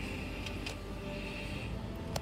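Steady low hum of a running freezer with its drawer open, with a couple of faint clicks about half a second in.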